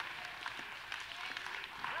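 A congregation applauding, an even patter of many hands, with a few faint voices calling out among the clapping.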